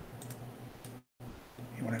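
A few faint, sharp clicks from a computer mouse and keyboard over a steady low hum, broken by a brief dead-silent gap about a second in. A man starts speaking near the end.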